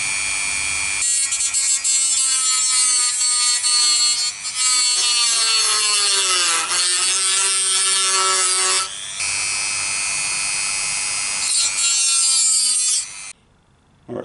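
Dremel rotary tool with a small cut-off disc cutting through a plastic retaining tab. A high steady whine turns rough about a second in as the disc bites, and the pitch sags lower under load. It rises back to a clean whine about nine seconds in, cuts roughly again briefly, then the motor stops near the end.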